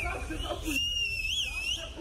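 Voices of a gathered crowd talking, with a clear high whistle held for about a second, rising and falling quickly once near its end.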